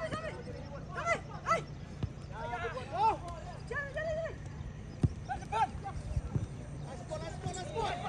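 Short shouted calls from footballers across the pitch, one after another, with a few sharp knocks of the ball being kicked.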